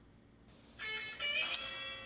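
Near silence, then guitar music starts a little under a second in: several held, ringing notes, with a sharp click in the middle.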